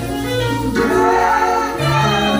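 Choir singing gospel music, several voices holding notes together over a steady low bass.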